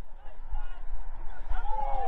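Open-air football pitch sound: a low steady rumble with faint, distant shouts from players, and one clearer call near the end.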